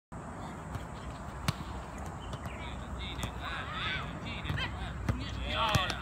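A football kicked on artificial turf, several sharp kicks (about one and a half, three and five seconds in), with high-pitched children's shouts and calls in the second half.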